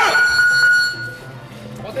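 A steady electronic beep held for about a second and a half, then stopping, with a sharp thud of a glove hitting the pad and a short shout right at its start.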